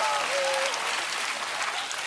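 Studio audience applauding after a punchline, with a brief held whoop in the first second; the applause gradually dies down.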